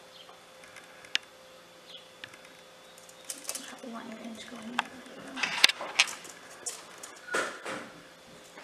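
Handling noise from a tape measure being positioned against a motorcycle's clutch lever and handlebar: a few light clicks and taps, sparse at first and then several sharp ticks close together in the second half.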